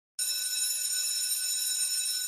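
A steady, high-pitched electronic ringing of several tones at once, like an alarm or bell, starting a moment in: the sound effect over a channel logo intro.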